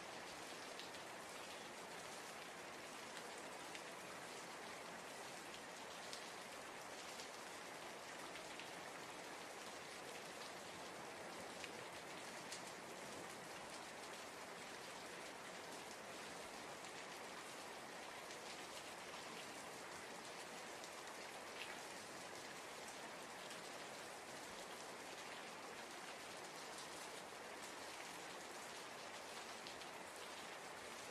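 Steady rain falling, an even soft hiss with scattered individual drop taps.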